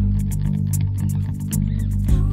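Live band music: an electric bass holds low notes under a regular high ticking beat, while the higher melody line drops out until just at the end.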